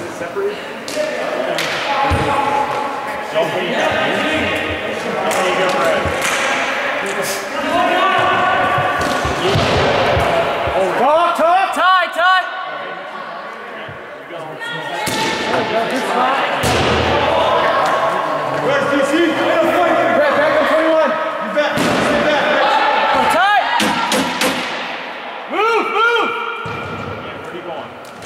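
Players shouting and calling out wordlessly during a broomball game in a large ice rink, with scattered sharp knocks and thuds of the ball and brooms hitting the boards.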